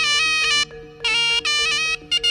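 Live jaranan gamelan music led by a shrill, nasal reed melody typical of the slompret (Javanese shawm). It plays in two short phrases with a brief dip between them, over a steady held lower note and lower gamelan notes.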